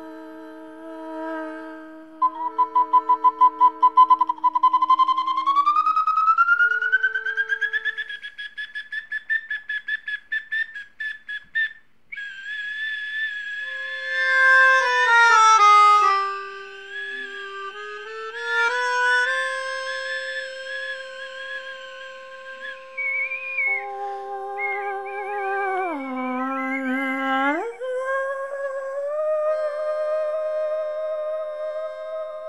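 Melodica and a small whistle-like wind instrument playing held tones in a free improvisation. A couple of seconds in, a high note flutters rapidly and glides slowly upward; later the held chords bend down and back up, twice.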